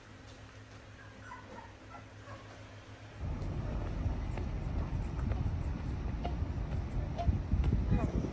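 Quiet room tone with a faint low hum for about three seconds, then, at a cut to outdoors, a loud, low, buffeting rumble of wind on the microphone that carries on to the end.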